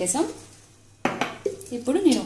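A glass jar clinks against a steel bowl about a second in, a sudden clatter amid a woman's talking.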